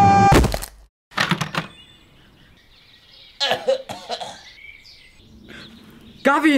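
A yell cut off by a loud crash as a person hits the ground after falling from an upstairs window, with a second thud about a second in. Then quiet outdoor ambience with faint bird chirps and a few short knocks.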